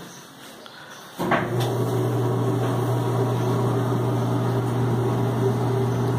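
Samsung steam clothes dryer starting up about a second in after the start button is pressed, its motor and turning drum then running with a steady low hum. It runs smoothly with no knocking, after a full cleaning of motor, bearings and pulleys.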